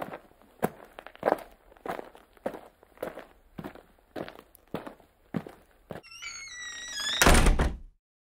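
Footstep sound effect for walking toy figures: a steady series of dull thuds, a little under two per second. Near the end a short pitched warbling sound comes in, then a loud burst of noise that cuts off abruptly.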